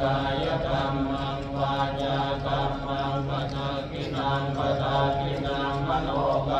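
Buddhist chanting in a steady, nearly unchanging monotone, amplified over a hall's microphone and loudspeakers.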